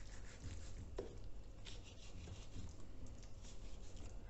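Kitchen knife slicing through raw chicken thigh to butterfly it open on a wooden cutting board: faint scraping and rubbing of the blade through the meat and against the board, with a light tap about a second in.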